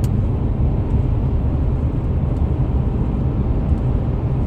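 Steady low rumble of a moving car's road and engine noise, heard from inside the cabin.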